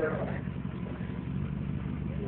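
Engine of a lifted 4x4 idling steadily with a low, even rumble.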